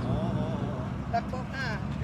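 Speech over a steady low engine drone that runs throughout.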